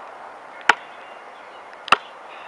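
A basketball being dribbled: two sharp bounces a little over a second apart.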